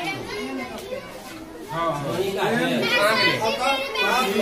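A crowd of schoolchildren's voices in a large room, many talking at once, growing louder about two seconds in.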